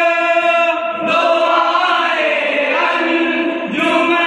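A group of men singing a devotional naat together in chorus, without instruments: long held notes that bend slowly in pitch, with a brief pause for breath about a second in.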